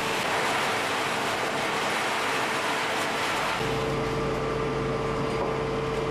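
Water hose spraying onto freshly dumped charcoal at about 500 °C, a steady hiss. About three and a half seconds in, a steady low machine hum with a rumble joins the hiss.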